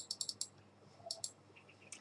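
Faint, quick computer mouse clicks: a rapid run of about six in the first half-second, then two about a second in and one more near the end.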